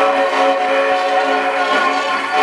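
Table-top cabinet gramophone playing a disc record: music starts abruptly, held notes with a thin sound and no bass.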